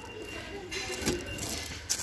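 Plastic-wrapped wallets handled on a shop shelf: a brief knock about a second in and a short crinkle of the cellophane near the end, over faint shop background with a distant voice.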